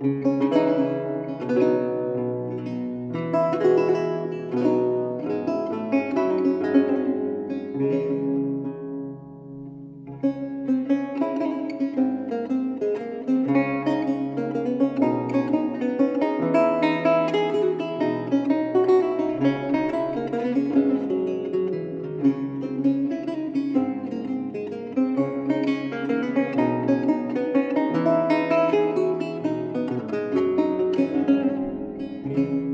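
Solo baroque lute playing a Baroque piece: a running line of plucked notes over a moving bass. About ten seconds in the playing eases to a brief lull, then resumes.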